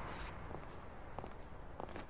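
Footsteps of two people walking on pavement: faint, sharp steps about every half second.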